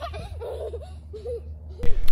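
Soft laughter, a few short bursts, over a low steady rumble.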